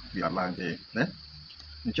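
A steady high-pitched insect trill, typical of crickets, runs under a man's voice speaking a few short syllables, with a low hum beneath.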